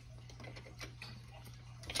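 Faint, scattered light clicks and taps of someone moving about a kitchen, over a low steady hum, with a sharper click near the end.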